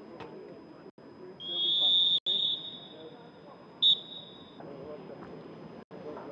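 Referee's pea whistle blown for half-time: a long, loud blast of about a second, then a short sharp blast about two seconds later. Players' voices call out on the pitch underneath.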